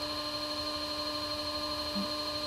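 Electric pottery wheel motor running at a steady speed, a constant whine with no change in pitch while clay is being thrown on it.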